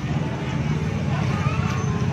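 Outdoor street ambience: a steady low rumble with people's voices talking indistinctly in the background.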